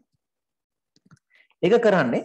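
A few faint computer mouse clicks, then a man starts speaking past the middle.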